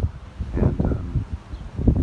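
Wind buffeting the phone's microphone in uneven gusts, a low rumble with a rustling edge.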